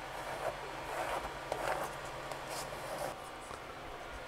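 A few faint, short rubbing strokes as a laminate sheet is smoothed down onto a plastic cutting mat by hand, over a faint steady hum.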